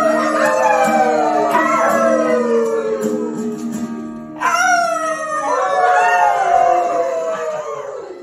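Human voices howling like dogs into the microphone: two long howls, each falling in pitch, with several pitches crossing at once. A held acoustic guitar chord rings under the first howl and fades out in the second.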